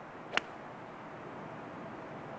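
A single sharp click of a golf club striking the ball on a full approach swing, about a third of a second in, over a steady background hiss.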